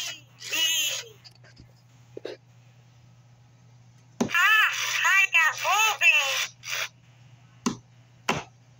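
A 1999 autumn Furby talking in its high, warbling electronic voice: a short phrase just after the start, then a longer run of Furbish chatter from about four seconds in to nearly seven, followed by a sharp click near the end.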